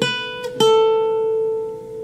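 Nylon-string guitar playing a minor scale one picked note at a time, about two notes a second, the last one held and left ringing as it slowly fades.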